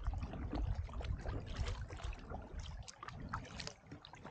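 Kayak paddle strokes in shallow water: the blade dipping and splashing, with water dripping in short irregular splashes, over a low rumble of wind on the microphone.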